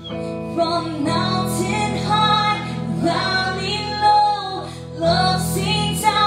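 A woman singing a worship song into a microphone, backed by a live band with guitar and a steady low sustained accompaniment.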